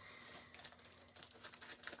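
Faint crinkling of a clear cellophane sleeve on a pack of designer paper as it is handled to be cut open.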